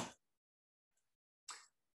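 Near silence, broken by one brief faint click-like sound about one and a half seconds in.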